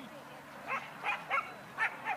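A dog barking four times in quick succession, short high barks.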